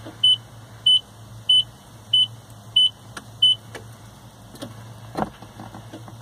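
Datsun 720 dashboard warning chime beeping evenly, about six short high beeps that stop about three and a half seconds in, followed by a few light clicks, over a steady low hum. No engine cranking is heard: the battery is too flat to turn the diesel over.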